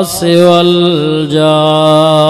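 A man chanting in long, held notes with a wavering vibrato: a short breath break just after the start, then the held note steps down in pitch about a second in.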